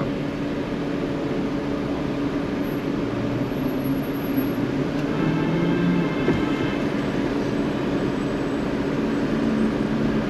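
Steady hum inside a car's cabin while it sits stationary with the engine idling and the air conditioning running.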